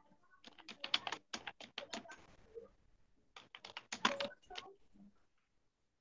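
Computer keyboard typing in two quick runs of key clicks, one starting about half a second in and another around three and a half seconds in, stopping about five seconds in.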